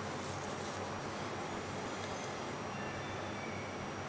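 Steady low background rumble, with faint high chirps near the middle.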